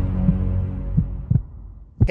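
Cinematic logo sting: a low droning hum with three deep thuds, fading out near the end.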